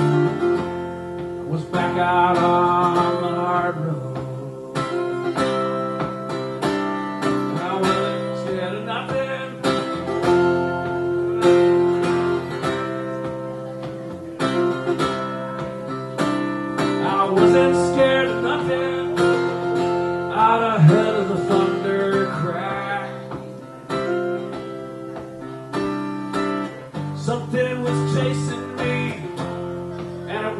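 Solo acoustic guitar playing an instrumental break between sung verses, with a steady run of plucked notes ringing over held chords.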